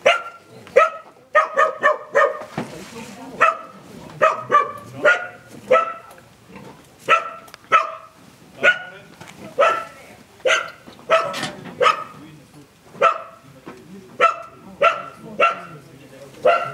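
A dog barking over and over in short, loud barks, often two or three in quick succession.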